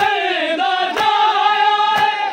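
A group of men chanting a noha, a Shia mourning lament, in a slow sung line, with sharp chest-beating slaps (matam) landing in time about once a second.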